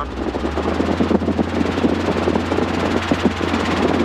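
Robinson R22 helicopter engine and main rotor heard from inside the cabin as the throttle is rolled back on after a practice autorotation. The engine's low tone shifts about half a second in, then holds steady under a rapid, even rotor chop.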